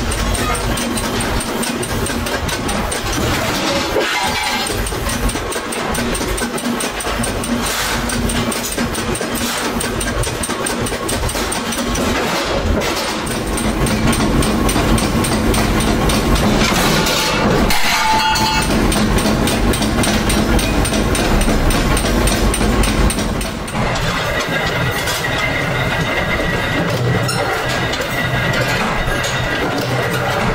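Steady running noise of workshop machinery, chiefly a motor-driven sheet-metal power shear, with a low hum and a few brief knocks.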